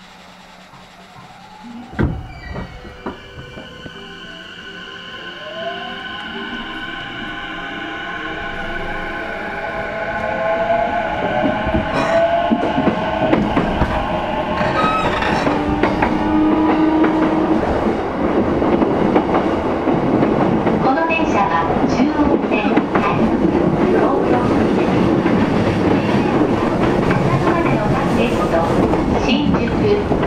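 JR East E233 series electric train heard from inside a motor car as it pulls away and accelerates. A thud comes about two seconds in, then the inverter and traction motors whine in several tones that rise in pitch as the train gathers speed. This gives way to loud steady running noise with rail-joint clicks.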